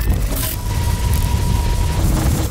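Cinematic promo sound design: a dense, noisy whoosh with heavy deep bass laid over dark electronic music. A thin steady tone sounds from about half a second in to a second and a half.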